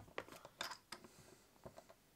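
Faint, scattered clicks and scratches of fingers picking a rubber screw-cover pad off the plastic case of an Xbox One power brick.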